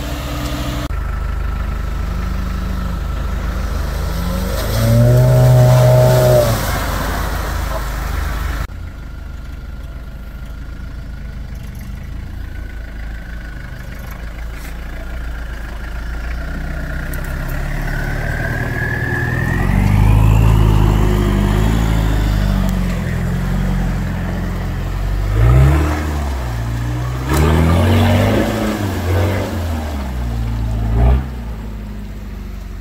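Engines of off-road 4x4s, a Suzuki Vitara and a Toyota Land Cruiser, idling and revving in bursts as they work along a muddy trail. The loudest revs come a few seconds in and again past the middle.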